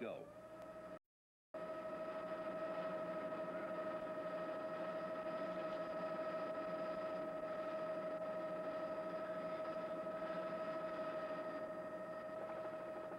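Helicopter running steadily, heard from the air: a constant whine over a rushing noise, with a brief dropout to silence about a second in.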